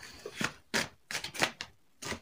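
A handful of short, sharp clicks and taps, about five in two seconds, like objects being handled close to the microphone.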